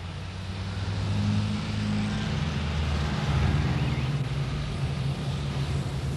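Motor vehicle engine running steadily, swelling in over the first second, its pitch dropping slightly about halfway through.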